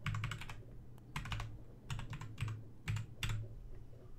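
Computer keyboard being typed on: several short runs of quick keystrokes with brief pauses between them.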